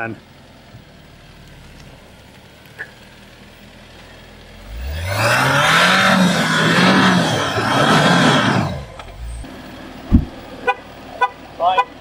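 Jeep Wrangler Rubicon's engine revving up sharply about halfway in and held for about four seconds, wavering, with the wheels spinning in deep mud, then dropping back: the Jeep is stuck and cannot drive out. A single thump follows near the end.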